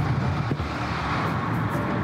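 Steady road and engine noise of a car driving fast, heard from inside the cabin, under background music.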